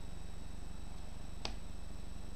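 One sharp click about one and a half seconds in, as a move is made in an online chess game, over a steady low electrical hum.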